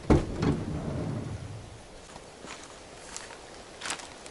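Handling noise from a camera tripod being carried and set up, with footsteps on the road: a knock at the start, about two seconds of rubbing and rustling, then a few light clicks.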